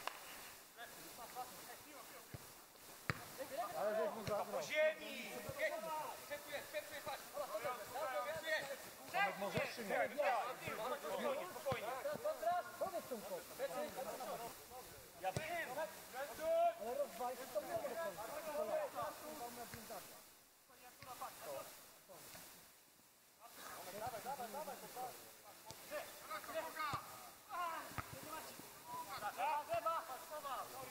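Men's voices from players and spectators calling and talking across an outdoor football pitch, indistinct, with a lull about twenty seconds in. A single sharp knock about three seconds in.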